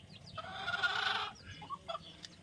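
A chicken calling: one drawn-out call of about a second starting about half a second in, followed by a couple of short calls near the end.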